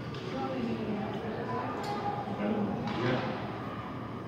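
Indistinct chatter of spectators, echoing in a hockey arena, with a couple of faint knocks about two and three seconds in.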